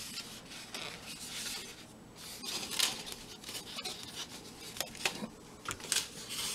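Hands rubbing and pressing a wet egg roll wrapper against a foam plate: uneven soft scraping and rubbing, with a few light knocks, the loudest about halfway through.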